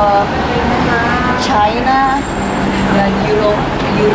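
Steady road traffic noise on a city street, with people's voices talking over it at times.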